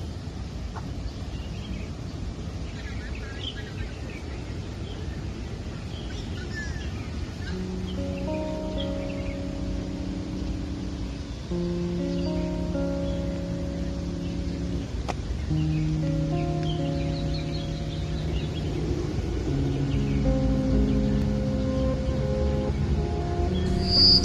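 Slow background music of long held chords, entering about eight seconds in and changing every few seconds, over outdoor ambience: a steady low rumble with scattered faint bird chirps.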